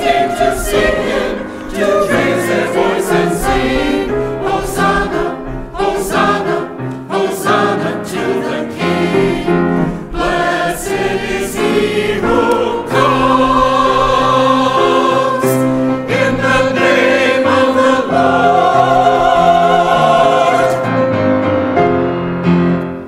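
Church choir singing the closing phrases of a hymn-anthem. The notes change quickly at first and lengthen into long held chords from about halfway through.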